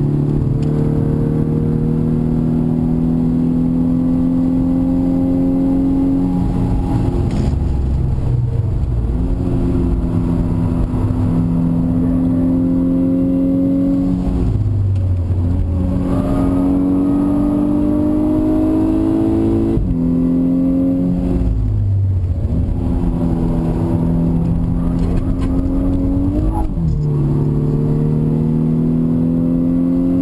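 2011 VW Golf VI R's turbocharged 2.0-litre four-cylinder engine under hard acceleration, heard from inside the cabin with road and tyre noise. Its pitch rises steadily in long pulls and drops sharply several times as it changes gear and lifts off for corners.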